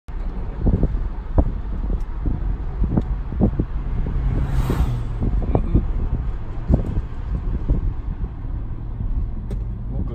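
Wind buffeting in through a car's open driver's window and against the microphone, in irregular low thumps over a steady low road rumble, with a brief louder rush about halfway through.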